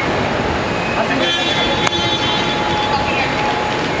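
Busy kerbside traffic noise with voices in the background. A vehicle horn sounds steadily for about two seconds, starting about a second in, with a sharp click partway through.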